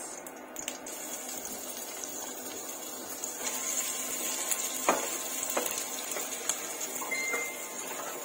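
Chopped garlic and onion sizzling in hot oil in a frying pan, the sizzle starting about a second in as they go into the pan. A wooden spatula stirs them, knocking against the pan a few times, and a short high beep sounds near the end.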